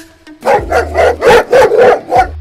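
Angry dog barking from a box: a rapid run of loud barks that starts suddenly about half a second in.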